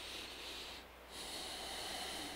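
A man breathing audibly through the nose close to a clip-on microphone: two soft breaths with a short pause about a second in.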